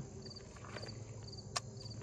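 Insects chirping faintly in the background: short pulsed chirps repeating about twice a second. A single sharp click sounds once near the end.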